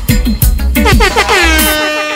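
Dancehall riddim with a steady drum beat, then about a second in a sound-system air-horn effect that swoops up in pitch and holds. The bass and drums drop out near the end, leaving the horn on its own.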